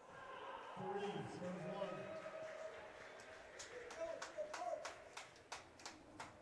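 Faint murmur of voices in a racquetball court, then a run of sharp, irregular taps on the hardwood court floor, about three a second, over the second half.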